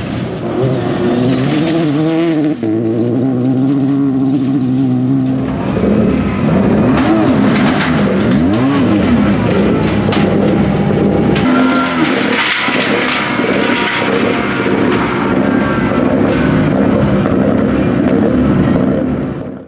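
Citroën DS3 rally car's engine revving hard through gear changes, with its pitch rising and falling, as it drives on a gravel stage. Later the engine sound carries on with swooping revs over a busier background.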